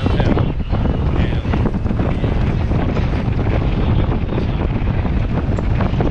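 Wind buffeting a GoPro camera's microphone: a steady, fluttering low noise.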